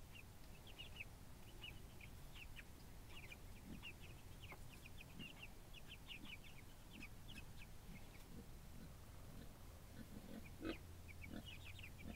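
Young Cornish Cross broiler chicks peeping faintly: a steady scatter of short, high peeps.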